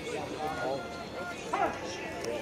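Indistinct voices talking in the background at a baseball field, over a steady outdoor hum.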